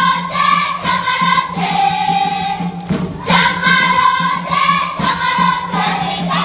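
A children's choir singing a Kisii (Gusii) traditional harvest folk song together, in held phrases of a second or two with short breaks between them. A steady low hum runs beneath the singing.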